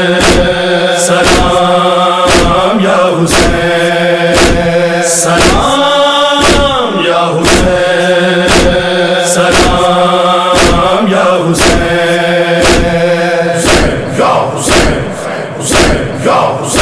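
Devotional Urdu salaam song: a chorus chants a repeated refrain over sustained tones and a steady, even beat. The chanting breaks off near the end.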